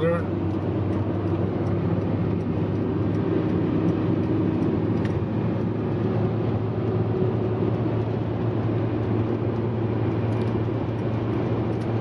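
Steady road and engine noise heard inside a car's cabin at highway speed, with a low, even hum throughout.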